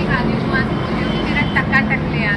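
Highway traffic: a heavy truck's engine humming low and steady as it passes, with voices in the background toward the end.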